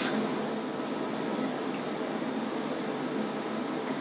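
Steady, even background hiss of a small room, with no distinct events.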